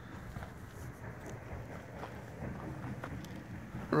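Soft, irregular footsteps and rustles in grass over a low outdoor background as someone walks around a parked dirt bike; the engine is not running.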